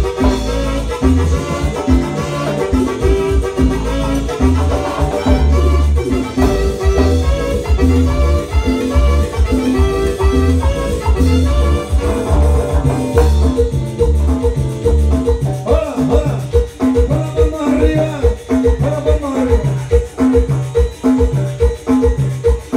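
Live band playing amplified Latin dance music on electronic keyboards with timbales and percussion, with a steady pulsing bass beat. About halfway through, the heavy bass drops out and a melody sliding up and down carries on over the percussion.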